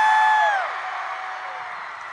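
A single high whoop held on one pitch, loud and ending with a quick drop about half a second in, followed by a concert crowd cheering more quietly.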